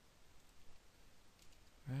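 A few faint computer mouse clicks while values are pasted into a spreadsheet, followed at the very end by the start of a spoken word.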